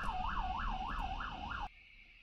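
Siren in a fast yelp pattern, wailing up and down about three times a second, cutting off suddenly near the end.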